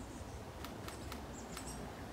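Quiet outdoor background with a low steady rumble, broken by a few short, faint high-pitched chirps and ticks.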